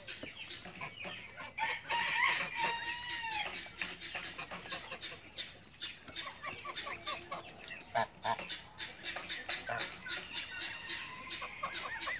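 Farmyard poultry calling: rapid short clucks go on throughout, with a longer drawn-out call that falls at its end about two seconds in and more calls near the end.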